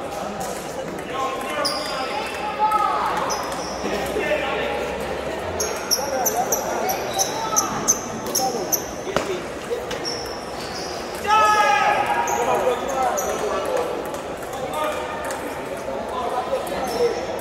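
Table tennis ball clicking off bats and table in a rally, over a constant murmur of voices echoing in a large hall, with short high squeaks. A louder voice calls out about 11 seconds in.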